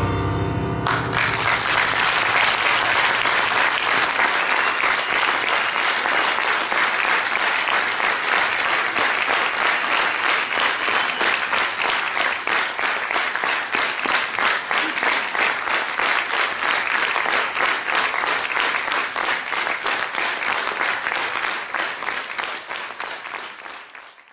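Audience applauding, starting as the last held chord of the music breaks off about a second in, and fading away near the end.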